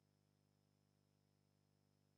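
Near silence: the sound drops out, leaving only a very faint steady hum.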